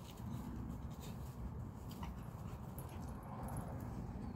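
Faint sounds from a beagle as it is let go and sets off searching for hidden food, over a steady low rumble.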